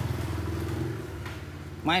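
A small engine running steadily, a low hum that fades away after about a second; a man's voice starts just before the end.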